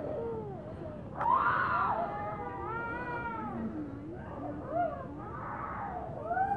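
Distant raised human voices: long, drawn-out shouted cries that rise and fall in pitch, the loudest starting about a second in.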